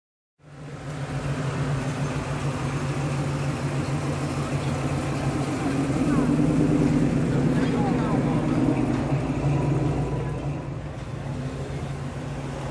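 Low, steady engine rumble of cars creeping past in city traffic, cutting in abruptly just after the start and swelling around the middle as a classic Chevrolet Chevelle idles by, then easing off near the end.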